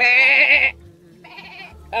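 Goat bleating: one loud, wavering cry, then a fainter second bleat about a second later.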